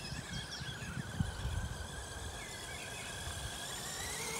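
Distant thin whine from an FTX Outlaw RC monster truck's electric motor and drivetrain running on grass at part throttle, wavering in pitch with speed, over a low irregular rumble.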